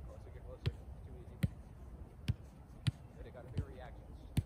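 A soccer ball being kicked back and forth in one-touch short passes, each strike a sharp thud. There are five kicks, about one every 0.7 seconds.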